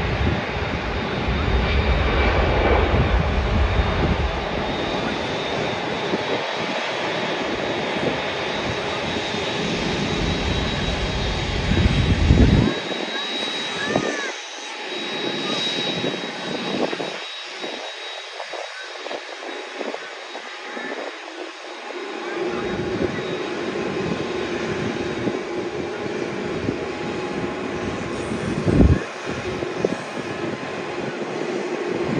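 Airbus A380-800 taxiing, its four jet engines running at taxi power as a steady noise with a faint high whine. The deep part of the sound thins out for several seconds midway.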